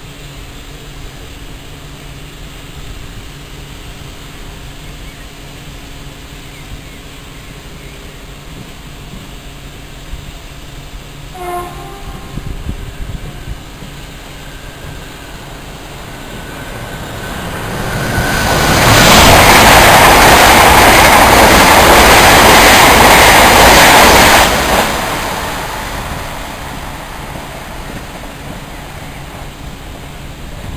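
A train passing on a nearby track: a low rumble that swells into a very loud rushing roar for about six seconds, then cuts off sharply and fades. A short horn-like toot sounds about eleven seconds in.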